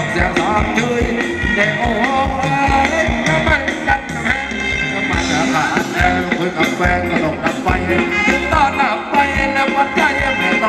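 Thai ramwong dance music from a live band over loudspeakers, with a steady beat and a gliding melody line.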